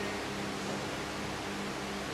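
Steady background hiss with a faint low hum: room noise with no distinct event.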